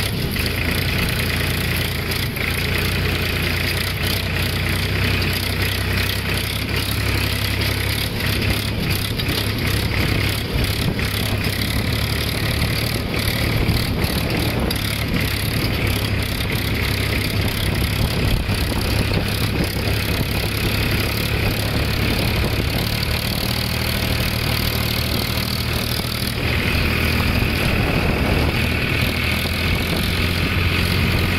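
Tractor diesel engine running steadily, heard close up from the driver's seat as the tractor drives over the field. The engine gets a little louder and brighter near the end.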